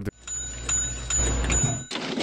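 Cartoon sound effect of a petrol pump nozzle filling a car trunk: fuel gushing with a low rumble, joined by a regular ticking of about three clicks a second.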